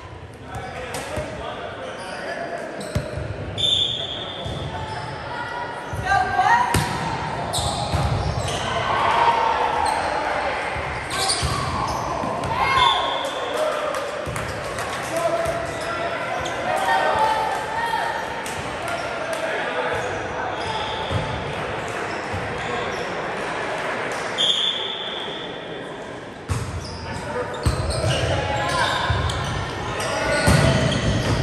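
Players' voices and calls echoing in a large gymnasium, with repeated knocks of a volleyball bouncing and being hit on the hardwood court. A few short, high squeaks sound about four seconds in, in the middle, and near the end.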